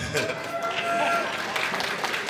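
Dinner audience laughing and clapping, with one held cheer from the crowd near the start.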